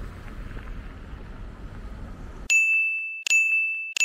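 Outdoor ambience with a low rumble, cut off suddenly about two and a half seconds in. Two bright single-tone sound-effect dings follow, under a second apart, each fading away.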